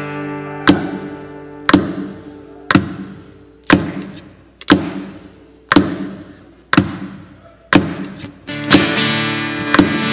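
Steel-string acoustic guitar played solo, with a sharp percussive strike about once a second, each followed by a ringing chord that fades away. Near the end the playing fills in with steady picked notes.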